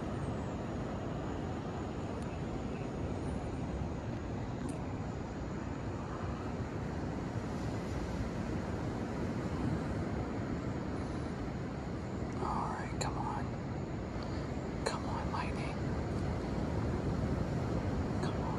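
A steady low rumbling outdoor noise with no distinct events. Faint voices come in briefly about twelve and a half seconds in and again about fifteen seconds in.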